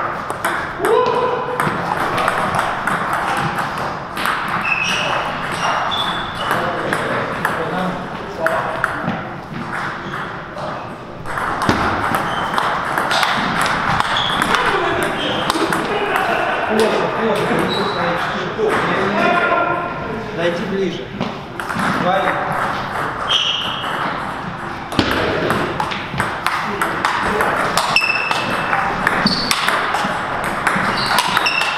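Table tennis rallies: the ball clicking off rubber-faced rackets and pinging as it bounces on the table, in quick irregular runs of hits with short pauses between points. Voices murmur in the background.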